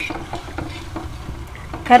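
Bondas deep-frying in hot oil, the oil sizzling steadily while a perforated steel skimmer stirs them in the pan.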